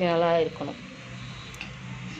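A woman's voice speaking for the first half-second, then a quiet stretch of room tone with a faint, low steady hum.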